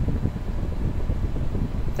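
Steady low rumbling background noise with no speech, the kind of continuous room or machine noise that runs under the lecture recording.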